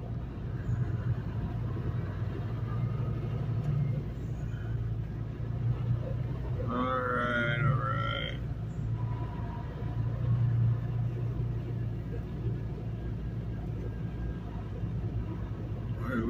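Semi-truck's diesel engine running at low speed while rolling slowly, heard from inside the cab as a steady low hum. A short burst of a man's voice comes about seven seconds in.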